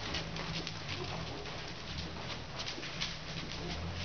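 A horse trotting on arena sand: soft, irregular hoofbeats and light rattles of tack, over a steady low hum.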